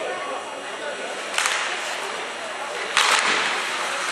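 Ice rink with a steady murmur of spectators and faint voices. Two short hissing scrapes of hockey skate blades on the ice cut through, a brief one about a second and a half in and a louder, longer one near the end.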